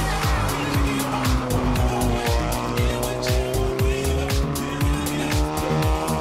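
Seat Leon TCR race car's engine running hard through hairpin bends, mixed with background music that has a steady beat.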